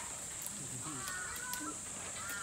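Yakushima sika deer browsing on leafy branches: leaves rustling and twigs snapping in short clicks, over a steady high-pitched drone. A few short chirping calls come in around the middle.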